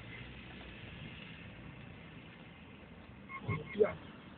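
A car's engine running quietly, a low steady sound heard from inside the cabin, with a brief spoken 'sí' near the end.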